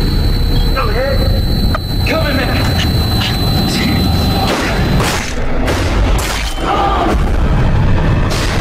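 Heavy, deep booming rumble of trailer sound design, with sharp cracks and hits about five to six and a half seconds in and a few brief shouted voice fragments in the first seconds.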